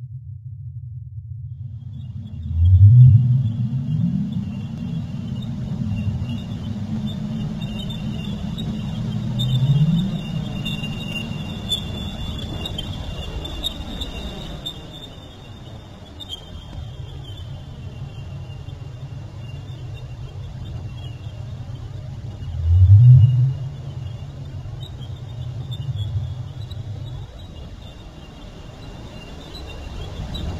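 Ambient film soundtrack: a deep rumbling drone with three low swells that rise in pitch, the first and last the loudest, under a thin steady high tone.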